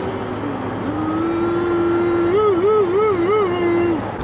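Steady road and engine noise inside a moving car's cabin. About a second in, a voice holds one sung note for about three seconds, ending in four even wavers.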